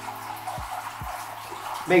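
Steady trickle of water from a tiered stone fountain, with faint sustained low tones underneath.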